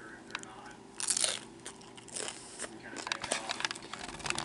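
Biting into and chewing a crisp hard-shell taco: a loud crunch about a second in, then a run of smaller crunches.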